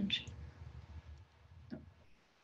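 A pause in a woman's speech: the tail of a spoken word, then a few faint mouth clicks over a low rumble, and a brief vocal sound near the end.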